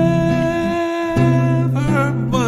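A man's voice holding one long sung note with a slight waver, over a nylon-string guitar. The low guitar notes drop away briefly and a new bass note comes in a little past the middle.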